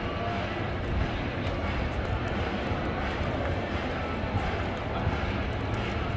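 Steady outdoor ambience: a low rumble and even noise haze, typical of wind on a handheld phone microphone, with faint sounds of people moving nearby.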